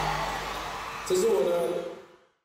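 The last of a live concert song dying away, then a voice speaking briefly about a second in, before the sound drops away near the end.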